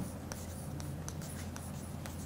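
Chalk writing on a blackboard: a string of short, faint strokes and taps, over a low steady hum.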